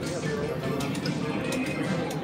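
Reel slot machine spinning its reels and stopping on a small win, over the casino floor's electronic machine music and background voices.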